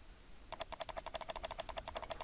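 Rapid, evenly spaced clicking from the computer's controls, about a dozen clicks a second, starting about half a second in, as the slant (skew) value of the selected text in InDesign is stepped up.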